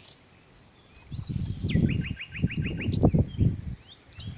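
A bird calling a quick run of about eight short rising notes, with a few other chirps, over loud low rumbling noise that starts about a second in and stops just before the end.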